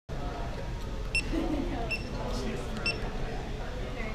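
Three short, high electronic beeps from a 360-degree camera, a little under a second apart, as it is set going by hand.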